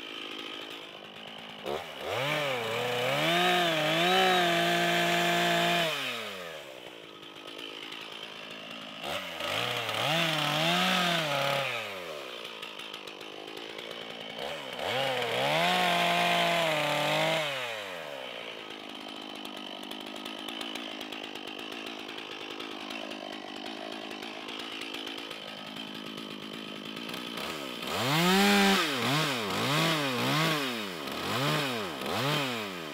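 Two-stroke chainsaw cutting a stump down low. It idles between four bursts of full throttle, each rising in pitch, held a few seconds and falling back to idle, and the last begins near the end.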